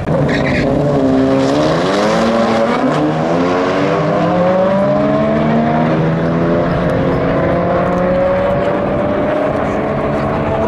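A Volkswagen Jetta GLI and a Mitsubishi Eclipse launching hard in a drag race and accelerating down the strip. Their engine pitch climbs and dips back several times as they shift gears.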